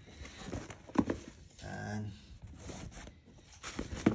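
Sneakers being handled on a tile floor: a sharp knock about a second in, then lighter clicks and rustles as a canvas high-top is picked up. A faint voice is heard briefly near the middle.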